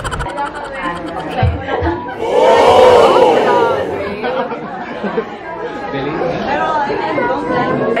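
Indistinct chatter of several people talking in a large room, with one voice rising louder for a couple of seconds about two seconds in.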